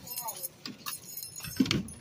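Scattered light clicks and clinks of small items being handled at a store checkout counter, the loudest a sharp click about one and a half seconds in, with a faint voice in the background.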